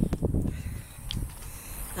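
Wind rumbling on a handheld camera's microphone, with a few soft knocks in the first half second, then dying down to a quieter outdoor background.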